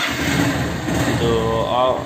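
Honda Hornet 160R's single-cylinder four-stroke engine starting on the electric starter, catching at once and running steadily.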